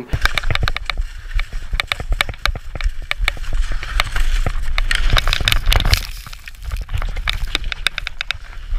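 Skis running downhill on hard snow, scraping and chattering in a rapid, irregular series of clicks, with wind buffeting the action camera's microphone as a steady low rumble.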